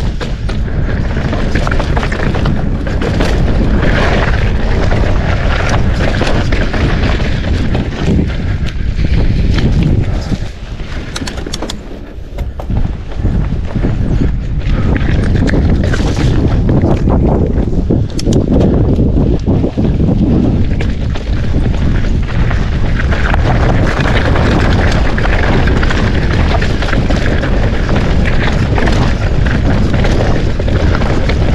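A mountain bike riding downhill over rock slabs and dirt singletrack: wind buffeting the camera microphone, with the tyres and bike rattling over the rock. It eases briefly about ten seconds in.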